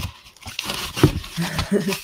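A woman laughing breathily in short bursts while handling paper and cardboard packaging.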